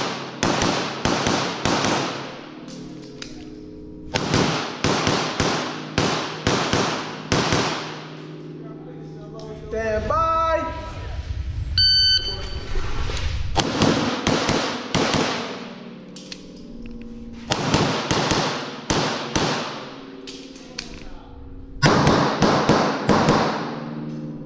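Strings of pistol shots from a Grand Power X-Calibur echoing in an indoor range, fired in quick pairs in about five bursts with short pauses between them as the shooter moves. Partway through, a brief ringing tone sounds in the longest pause.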